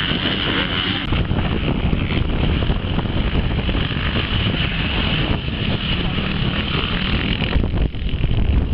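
Motocross dirt bikes running at high revs around the track, with wind on the microphone and voices in the background.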